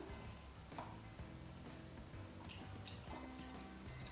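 Faint background music with a few soft ticks.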